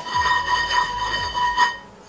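A Michelangelo 8-inch honeycomb nonstick frying pan struck by hand, giving a clear metallic ring of several steady tones that lasts about a second and a half and fades near the end. The reviewer takes the ring as a sign of high-quality material.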